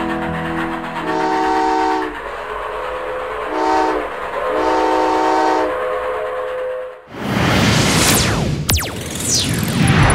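Steam locomotive whistle sound effect: a chord-toned whistle blown three times, a longer blast, a short one and another longer one, over a steady noise. About seven seconds in it cuts off, and a loud whoosh with falling tones follows.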